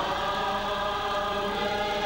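A congregation or choir singing a church hymn together, holding one long note.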